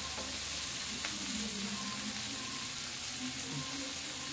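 Masala-coated fish pieces shallow-frying in oil in a non-stick pan, sizzling steadily.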